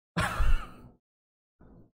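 A man's short breathy vocal outburst with a wavering pitch, lasting under a second, followed by a faint brief sound near the end.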